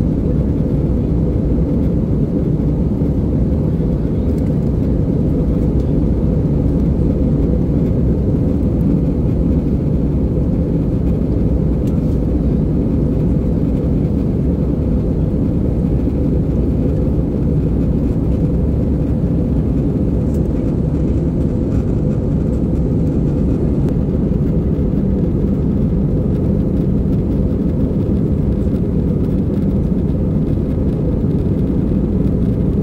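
Steady cabin noise of a jet airliner in flight, heard from inside the passenger cabin: an even, deep rumble of engines and airflow that holds unchanged throughout.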